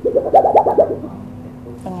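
A woman's short, high, quickly pulsing vocal sound, her reaction on tasting very fine, pure salt, followed near the end by a brief spoken question.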